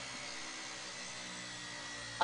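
Sound effect of a steam-powered drill running: a steady machine noise with a low hum underneath.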